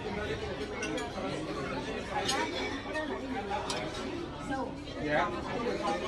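Indistinct overlapping chatter of several people at a restaurant dinner table, with a few light clinks of dishes and cutlery.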